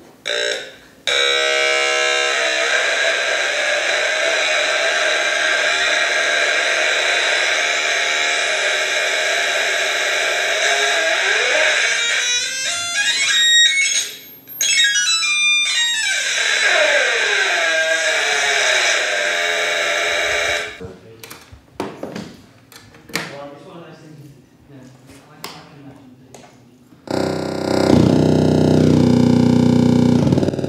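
Hand-built Atari Punk Console synth played through an added fuzz distortion circuit: a loud, harsh buzzing tone, its pitch sweeping down and back up around the middle. It cuts off suddenly, leaving scattered clicks and blips, then a loud low buzz stepping between pitches near the end.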